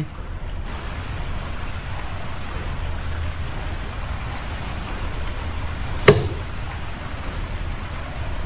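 Steady hiss with a low hum underneath, broken once by a short sharp click about six seconds in.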